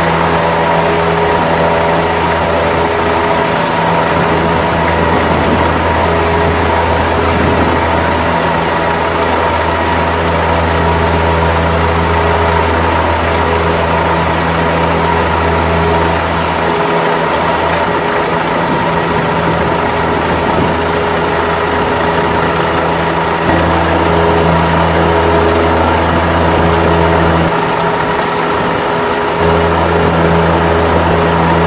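Heavy engine idling steadily, a constant low drone; its deepest tone cuts out briefly twice, around the middle and near the end.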